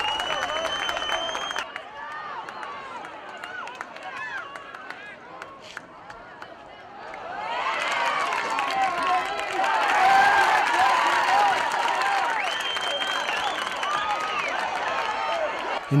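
Lacrosse game crowd shouting and cheering, many voices at once, growing louder about seven seconds in. A long whistle blast sounds at the start and a shorter one about twelve seconds in, likely the referee's whistle.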